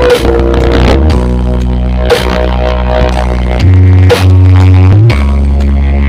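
DJ dance music played very loud through a giant truck-mounted sound-horeg speaker system: deep sustained bass notes that step to a new pitch every second or so, with a sharp hit about every two seconds.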